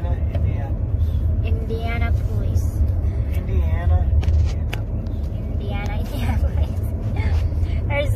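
Steady low rumble of a running car heard from inside its cabin, with soft voices now and then.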